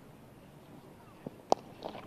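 A single sharp knock of a cricket bat striking the ball about a second and a half in, from a shot not cleanly middled, preceded by a fainter tap. Otherwise quiet cricket-ground ambience.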